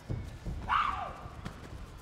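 Taekwondo fighters' feet thudding and stamping on the competition mat during an exchange of kicks, with a short, sharp shout about three-quarters of a second in that falls in pitch.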